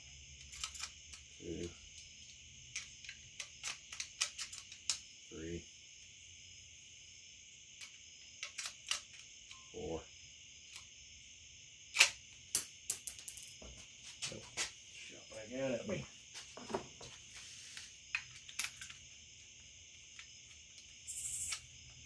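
Marlin 1894C lever-action rifle being cycled by hand with factory .38 cartridges in the tube magazine: a scattered series of metallic clicks and clacks from the lever, bolt and carrier, the sharpest about twelve seconds in. The rifle is being tested for the double-feed jam it had before its repair.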